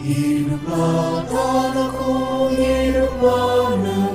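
Two male voices singing an Indonesian patriotic song, with long held notes.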